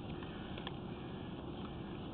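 Faint steady background hiss with a thin, steady high-pitched tone running through it, and one small click a little under a second in.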